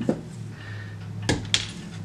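Soft-faced mallet tapping an upholstery tack into a wooden board: two sharp taps about a second in, a quarter second apart, after a lighter knock at the start.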